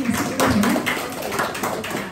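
A small group applauding, with many quick, irregular, overlapping hand claps.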